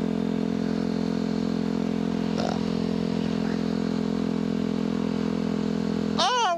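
2010 Yamaha WR250R's 250 cc single-cylinder engine running at a steady cruise on the road. The engine note holds one pitch with no revving, over a steady rush of road and wind noise.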